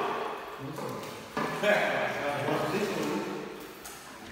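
Indistinct background voices, too unclear to make out words.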